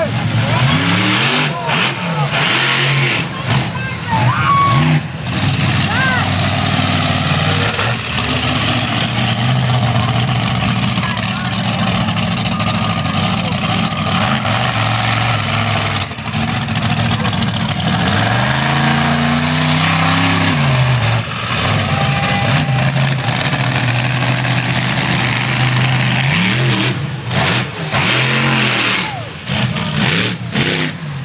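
Monster truck engine running loud and revving up and down repeatedly as the truck drives on the dirt track. One long rev rises and falls about two-thirds of the way through.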